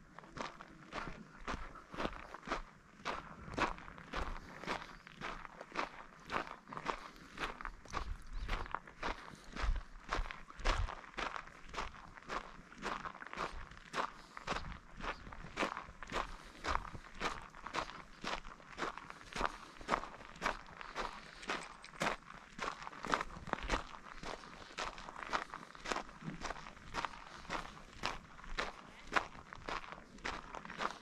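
Footsteps on a gravel and dirt trail, a steady walking pace of about two steps a second, each step a short crunch.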